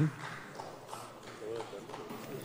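Footsteps on a hard floor in a large, reverberant assembly hall as a man walks up to the rostrum, with faint background voices and a brief murmur about one and a half seconds in.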